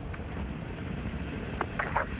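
Steady low rumble and rushing noise of a Soyuz rocket climbing on its first-stage engines, with no pitch to it, and a couple of faint clicks near the end.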